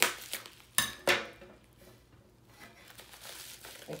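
Scissors snipping through plastic wrapping: a few sharp cuts in the first second or so, then faint crinkling of the plastic as it is pulled open.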